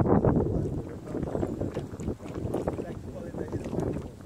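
Wind buffeting a phone's microphone out on open water: an uneven, rumbling noise, loudest in the first second.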